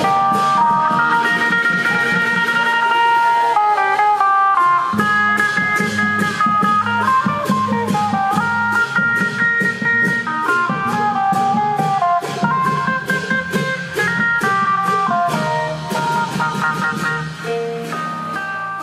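Amplified Isan procession music: a phin (Thai plucked lute) playing a quick, bending melody over a steady beat of klong yao long drums, carried through horn loudspeakers.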